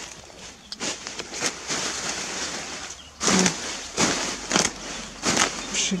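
Rustling and crackling of a pile of freshly pulled Japanese knotweed stems and leaves being stirred and pressed down by hand, in a string of short bursts that grow louder in the second half.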